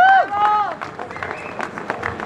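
Rally crowd reacting in a pause: one loud high shout in the first second, rising and then held, over scattered clapping. A thin steady high tone comes in near the end.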